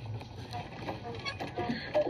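A film's soundtrack with voices playing from a TV, picked up off the set's speakers in the room.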